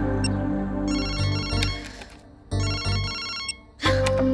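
Mobile phone ringtone ringing in repeated bursts about a second long, with short gaps between, over background film music.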